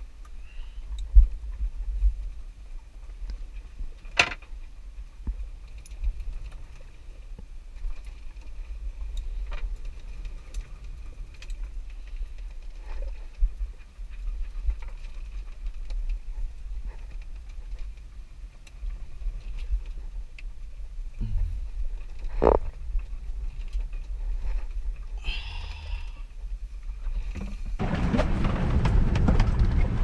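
Low rumble of gale wind buffeting the microphone aboard a small sailboat riding to a sea anchor, with a few sharp knocks from the boat. A louder rushing noise starts near the end.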